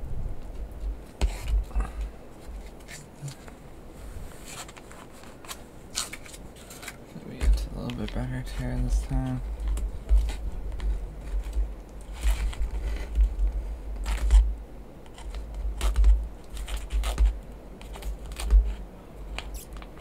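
Crinkling, crackling and tearing of an MRE retort pouch as it is squeezed and peeled open by hand, with scattered sharp crackles and low handling thumps.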